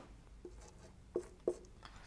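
Faint strokes of a marker pen on a whiteboard as a number is written, with a few short ticks of the pen tip striking the board, the clearest two just over a second and about one and a half seconds in.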